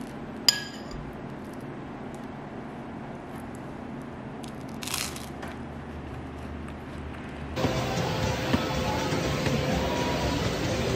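A metal spoon clinks once against a ceramic bowl about half a second in, with a short ring. About seven and a half seconds in, the sound changes to a Matrix stair-climber running: a louder, steady machine hum with one held tone.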